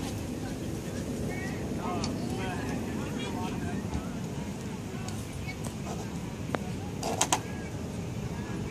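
Outdoor background of distant, indistinct voices over a steady low rumble, with a short sharp clatter about seven seconds in.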